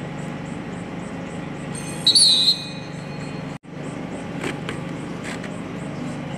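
Referee's whistle blown once, a short trilling blast about two seconds in, just after the last seconds of the bout's countdown run out, over the steady murmur of a large crowd. The sound cuts out briefly past the middle.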